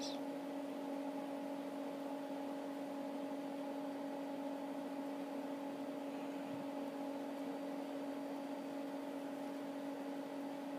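A steady, unchanging low hum with a faint hiss behind it.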